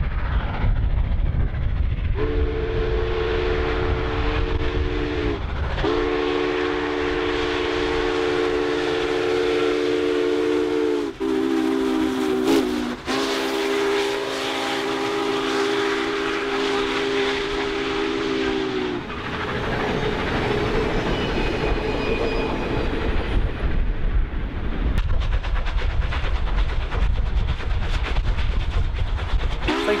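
Union Pacific 844, a 4-8-4 Northern steam locomotive, sounding its chime whistle in the grade-crossing pattern: two long blasts, a short one, then a long one whose pitch drops at its end as the engine passes. Steady train running noise follows once the whistle stops.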